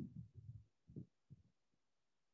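Near silence in a pause between spoken phrases, with a few faint, soft low thuds in the first second and a half.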